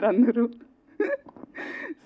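A woman speaking, breaking off after half a second, then a short breathy laugh with a catch in it.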